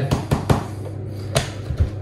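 A few light knocks and clicks of a plastic measuring cup and flour tub being handled at a table while flour is measured out, over a steady low hum.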